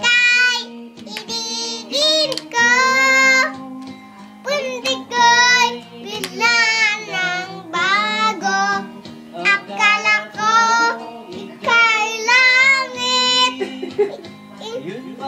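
A child singing a melody in a high voice, in short phrases with wavering pitch, over background music.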